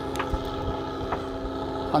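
A fishing boat's engine running steadily, a constant droning hum, with a couple of faint clicks.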